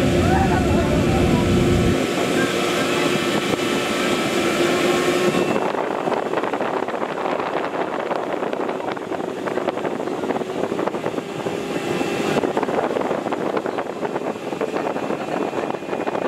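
Steady machinery noise inside a tourist submarine's passenger cabin, with a constant low tone under it. A deep rumble fades about two seconds in, and a high hiss cuts out around five seconds and comes back around twelve.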